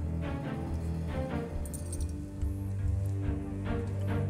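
Background music: a steady, held underscore of sustained low notes with higher tones above.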